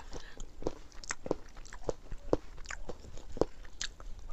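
Wet mouth sounds of eating soft milk-rice kheer by hand, close to a clip-on microphone: irregular smacks and clicks of chewing, a few each second.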